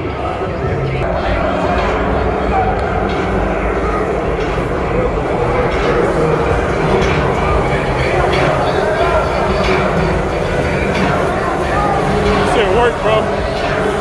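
Indistinct voices of players and staff in a large indoor practice hall, over a steady low rumble of the building's ambience.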